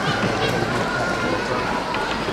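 A large street crowd talking at once in a steady murmur, mixed with the shuffling of many feet.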